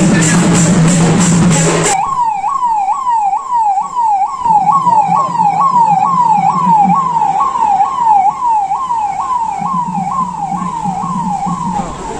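Drum-led music for about two seconds, then an abrupt cut to a motorcade's vehicle siren. The siren yelps rapidly up and down in pitch, about twice a second, until the end.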